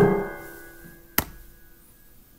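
The piano's final chord of the medley rings on and fades away over about a second. A single sharp click follows about a second in.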